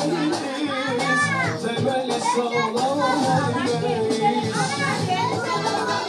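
Children's voices chattering and calling out over background music, with two high, arching calls about a second in and near the five-second mark.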